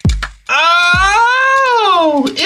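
A man's long, drawn-out wailing vocal sound made with the mouth, its pitch rising and then falling. Deep bass thumps sound at the start and again about a second in.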